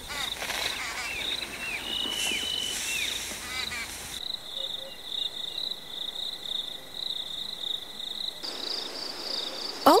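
Wild-bird calls, a handful of short rising-and-falling whistles, over a steady pulsing insect trill. About four seconds in the birds stop and the insect trill carries on alone, shifting a little higher near the end.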